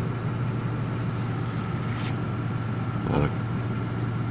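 A steady low hum with a thin, faint high tone above it, unchanging throughout, with a single short click about two seconds in.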